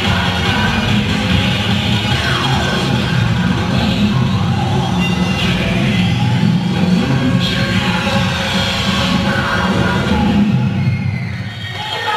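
Loud cheerleading routine music playing throughout, with several sliding tones in the mix; the loudness dips briefly near the end.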